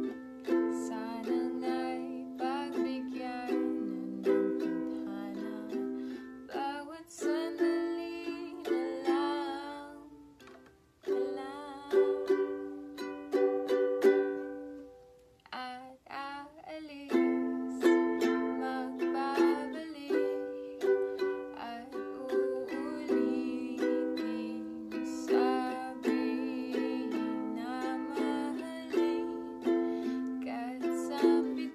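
A woman singing to her own strummed ukulele, the chords played in a steady strumming rhythm. The playing drops away briefly twice, around ten and sixteen seconds in.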